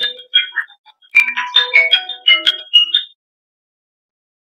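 A phone ringtone playing an electronic melody of quick, short high notes, with a brief gap about a second in. It cuts off abruptly about three seconds in.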